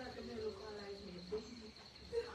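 Steady high-pitched insect trill, with faint voices in the background.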